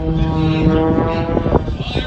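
Aerobatic biplane's piston engine and propeller droning at a steady pitch, fading briefly near the end.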